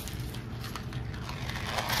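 Faint rustling and a few light clicks of tiny seashells being pushed around on a paper plate by fingers.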